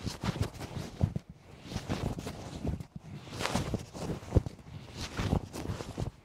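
Swishes of a karate uniform's sleeves as a low block and an inside knife-hand block are repeated, coming as a string of irregular rustles about once a second with a few soft knocks.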